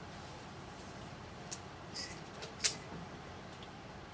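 A few light clicks and a brief squeak from lab equipment handled on a benchtop, the sharpest click a little past the middle, over steady room hum.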